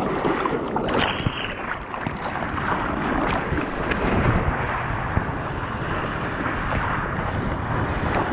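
Water rushing and splashing around a surfboard as it is paddled into and then rides a wave, heard close up from a mouth-mounted GoPro, with wind on the microphone. Two sharp clicks stand out in the first few seconds.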